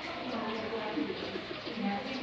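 Several voices talking in the background, with a bird calling.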